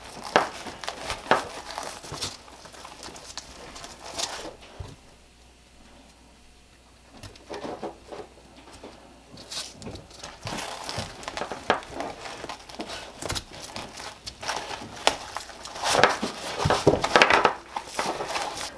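Nylon webbing and a fabric pouch rustling and scraping as stiff polymer clip straps are forced up through micro MOLLE loops on a duty belt, with scattered sharp clicks. It goes quieter for a few seconds in the middle, then the handling picks up again near the end.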